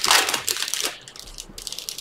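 Rustling, scratchy handling noise from trading cards and foil pack wrappers on a table, busiest in the first second and then dying down.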